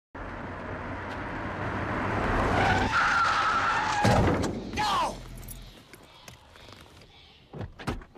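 A car approaching fast and braking hard, its tires squealing into a skid, ending in a sharp thud about four seconds in. A short cry follows, and the sound then dies away.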